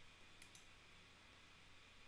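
Near silence: faint room tone with two quick, faint clicks about half a second in.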